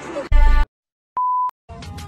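A brief loud burst of music cuts off into dead silence, then a short, steady electronic bleep on one tone sounds just over a second in, an edited-in beep between clips.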